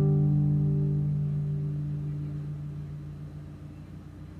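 The final chord of a nylon-string classical guitar is left ringing and slowly dies away, closing the song. It fades steadily to a faint hum by the end, with no new strum.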